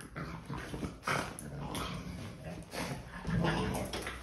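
A pug making a run of short, irregular vocal noises while playing, the loudest a little before the end.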